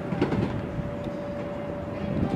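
Stunt scooter wheels rolling fast down a wooden mega ramp roll-in, a steady rumble with a faint steady tone over it.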